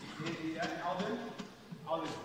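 A man's voice talking in a large hall, the words not clear, over a regular series of light clicks, a bit more than two a second.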